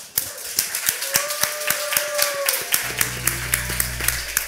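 An audience clapping together in a steady, even beat, as if setting a tempo to sing along to. In the middle a voice holds one note for about a second and a half, and about three seconds in a low steady tone comes in under the clapping.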